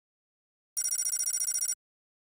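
Notification-bell sound effect: a small bell trilling rapidly for about a second, starting just under a second in.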